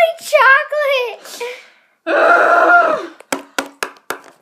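Young girls' wordless, high-pitched vocalizing: a rising and falling run of sound, then a held note about two seconds in. This is followed by several quick sharp taps near the end.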